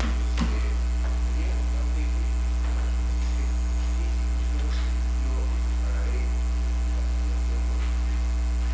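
Steady electrical mains hum, with a string of higher hum tones above it, carried through the microphone and sound system, with faint room noise behind it.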